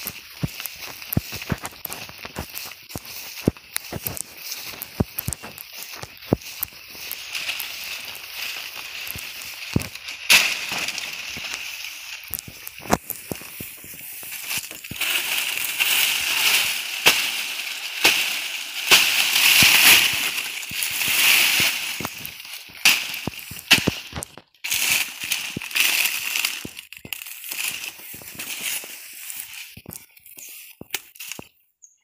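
Footsteps through grass with small sharp clicks. From about halfway, a louder crackling rustle of dry banana leaves and sharp knocks as a bunch of green bananas is cut from the plant with a blade.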